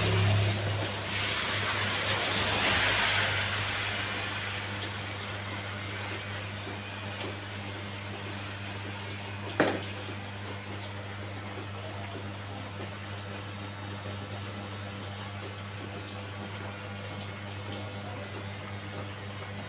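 Electric hair clipper running with a steady low hum. A hiss comes in the first few seconds, and there is one sharp click about halfway through.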